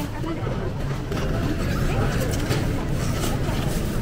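Busy supermarket ambience: a steady low hum with indistinct chatter of shoppers in the background.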